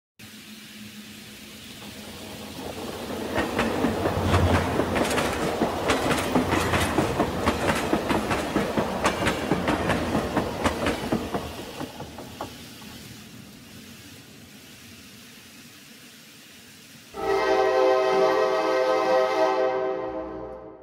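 Model trains rolling past on the layout, the wheels clicking rapidly over the rail joints as the trains come close, then fading away. Near the end a train-whistle tone with several pitches starts suddenly and sounds for about three seconds before dying away.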